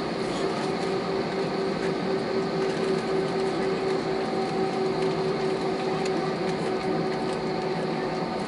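Airbus A320 cabin noise while taxiing, heard inside the cabin: the jet engines at low thrust give a steady hum with several held tones over a background rush.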